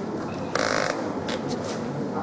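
A single short, harsh caw from a bird, about a third of a second long, over the low murmur of a seated audience, followed by a few light clicks.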